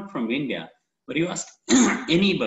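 A man speaking in three short bursts with brief pauses between them. One burst may be a throat clearing.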